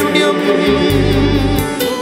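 Male vocal group singing a Malayalam Christian worship song in unison and harmony, with keyboard accompaniment; a low bass line comes in about a second in.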